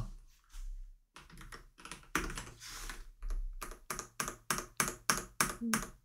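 Computer keyboard keys clicking in a run of short, separate taps, a few a second.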